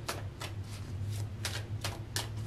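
A deck of tarot cards being shuffled by hand: about half a dozen short swishing strokes of the cards, over a steady low hum.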